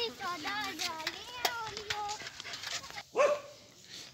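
A dog whining and yelping in short, high, wavering calls, with one louder call about three seconds in.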